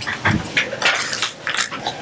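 Paper pages rustling and crackling as they are handled and turned, close to a microphone, in quick irregular bursts.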